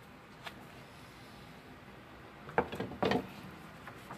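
A sheet of patterned craft paper being handled and lifted off a cardboard backing: a light tick about half a second in, then two short rustling knocks near the end.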